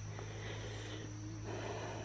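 Quiet outdoor background between sentences: a steady low hum with a faint, steady high-pitched tone above it, and no distinct events.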